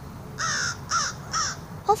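A bird calling three times in quick succession, about half a second apart.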